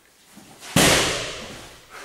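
A roundhouse kick smacking into a hand-held padded kick shield: one loud, sharp smack about three-quarters of a second in, with a short echo trailing off over about a second.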